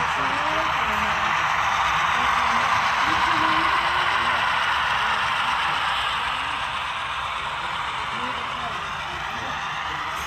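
Indistinct background chatter of people talking, over a steady hiss of room noise that eases off a little past the middle.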